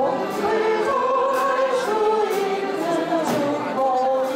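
Piano accordion ensemble playing a slow tune in held notes, with a group of voices singing along.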